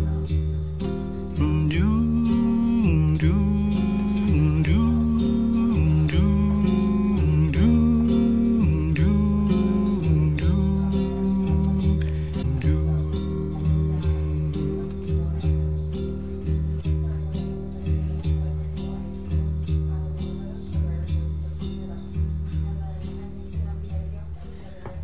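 Bossa nova recording of a solo nylon-string acoustic guitar with a man's wordless vocal. For the first half the voice repeats a short melodic phrase while the guitar chords keep changing underneath; then the guitar carries on with the voice fainter.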